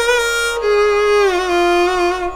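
Violin playing a Carnatic phrase in raga Bhairavi: a bowed note slides down, settles on a lower held note, then steps down once more about one and a half seconds in and holds.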